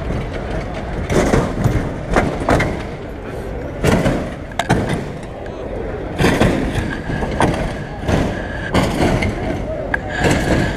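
A 1964 Chevrolet Impala lowrider hopping on its hydraulics: a run of sharp thumps and bangs, about ten at irregular spacing, as the car is thrown up and lands, over crowd chatter.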